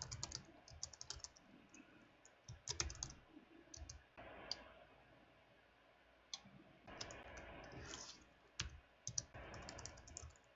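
Computer keyboard typing, faint, in short bursts of keystrokes with pauses between them.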